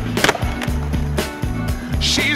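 A skateboard landing on a concrete floor with one sharp clack about a quarter second in, then its wheels rolling away. Background music plays throughout.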